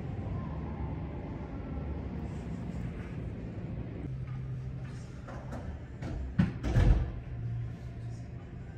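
Low, steady rumble of distant city street traffic. A steady low hum joins about halfway, and two loud thumps come close together near the end.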